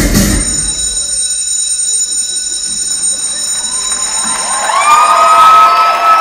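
Dance music cuts off just after the start, leaving a steady high ringing tone. Audience cheering and high-pitched screaming then swell loudly over the last two seconds.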